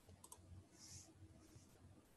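Near silence with a faint computer mouse click, a quick double tick, about a quarter second in, and a soft brief hiss near one second.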